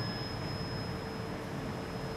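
Low background hiss with a faint, steady high-pitched electronic tone and a weaker lower hum held underneath, a whine from the recording or sound-system electronics.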